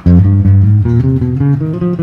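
Ibanez electric guitar playing single notes one after another: a low note held for nearly a second, then shorter notes climbing step by step, the 1-3-2-4 finger warm-up exercise.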